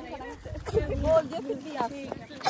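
Several women's voices chattering together while walking, with a low rumble on the microphone that stops just over a second in.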